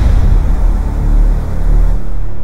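Loud, deep, sustained rumble of a cinematic logo sting, with no clear tune.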